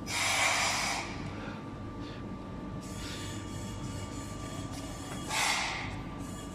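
Two breaths out close to the microphone, one in the first second and a shorter one about five seconds in, over a faint steady high tone.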